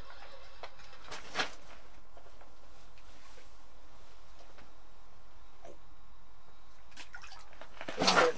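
Spinning reel on a short ice-fishing jigging rod being worked as a fish is reeled up through the ice hole: scattered faint ticks and clicks, with one sharper click about a second and a half in, over a steady hiss.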